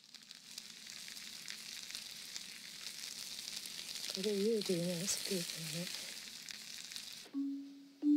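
Sliced button mushrooms sizzling and crackling as they fry in a pan, stirred with chopsticks. The sizzle cuts off suddenly shortly before the end.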